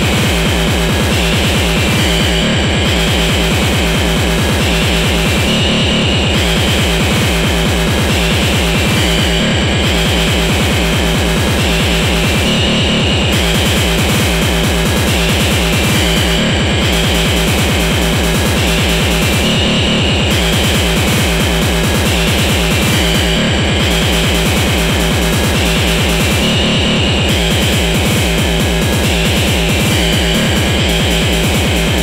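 Speedcore electronic music: an extremely fast, relentless kick-drum beat under a dense, harsh, noisy wall of synth sound, with a brief drop in the top end about every three and a half seconds.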